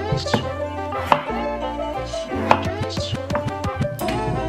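Background music, over which a kitchen knife cuts through raw potatoes onto a wooden chopping board, with two sharp knocks, one about a second in and one at about two and a half seconds.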